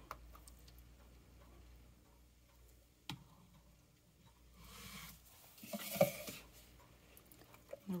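Quiet handling sounds from soap batter being poured between a glass jug and a plastic measuring jug: a single sharp click about three seconds in, and a soft knock and rustle about six seconds in.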